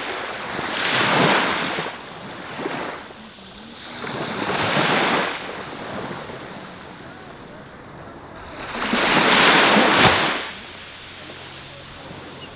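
Small waves breaking on a sandy beach: three separate washes of surf rise and fall, each a couple of seconds long. The last, about nine seconds in, is the loudest.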